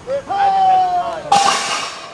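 A long, high cheer held for about a second. Then, about a second and a half in, a sudden loud clattering crash as the steel farmer's walk implements are dropped on the pavement at the finish line.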